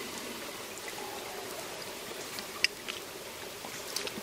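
Shallow woodland stream running steadily, with a faint click about two and a half seconds in.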